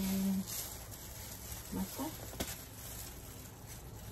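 A few brief spoken words, with a single sharp click about two and a half seconds in, over a steady low hum.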